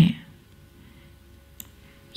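A woman's speaking voice ends a word, then a pause with a faint steady low hum and a single faint click about one and a half seconds in.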